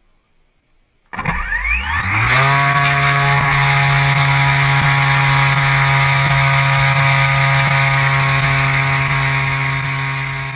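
Radian RC glider's electric motor and propeller spinning up about a second in: a whine that rises quickly in pitch, then holds a steady, loud full-throttle drone.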